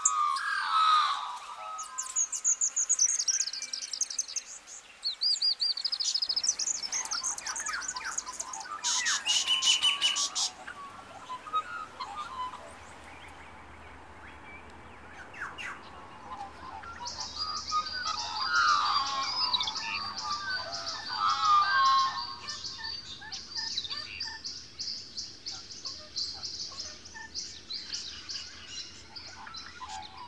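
Several birds calling and singing: a varied run of chirps and warbled phrases, with a dense burst of calls about a third of the way in and a continuous high-pitched trilling through the second half.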